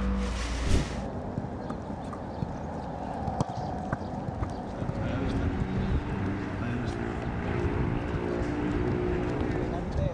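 Outdoor ambience with faint, indistinct voices and a few scattered sharp knocks. Background music cuts off about a second in.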